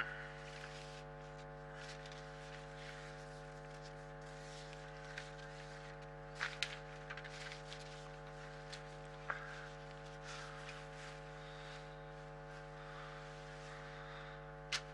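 Faint steady electrical hum on the sound feed, with a low hiss and a few faint clicks, loudest about six and a half and nine seconds in.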